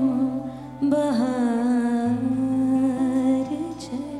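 A female singer holds and slides between long notes of a ghazal melody with no clear words, over a low sustained accompaniment note that breaks off and comes back lower about two seconds in.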